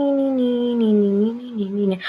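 A woman's long drawn-out wordless hum or 'hmm', its pitch sliding slowly down and wavering near the end.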